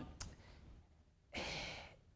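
A man's single audible breath, about half a second long, picked up close on a clip-on lapel microphone partway through a pause in his talk, with a faint mouth click just before it.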